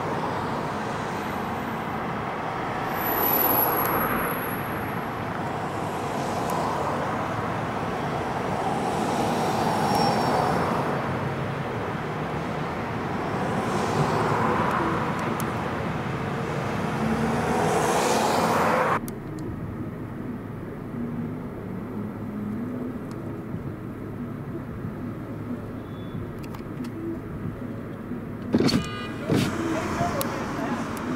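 Street traffic: cars passing one after another, each swelling and fading. About two-thirds of the way through the sound cuts suddenly to a quieter street background, with a few sharp clicks near the end.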